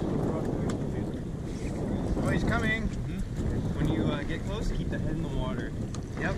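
Wind buffeting the microphone: a steady low rumble, with faint voices in the background.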